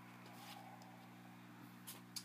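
Near silence: room tone with a steady low hum, broken by a few faint clicks, the clearest just before the end.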